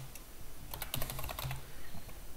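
Computer keyboard being typed on: a quick run of key clicks that starts a little under a second in.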